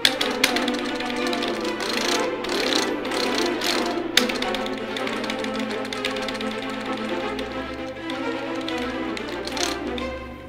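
Sampled orchestral strings playing a dense, chaotic cluster of rapid short spiccato notes, many pitches at once with a rattle of quick repeated attacks.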